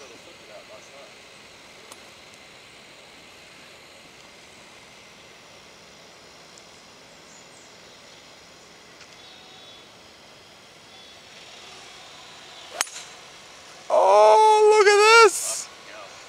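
A single sharp click of a three wood striking a golf ball off the tee, over a quiet outdoor background. About a second later a voice calls out loudly, its pitch wavering up and down.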